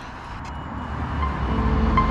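A low rumble swelling steadily louder, with faint music tones coming in near the end.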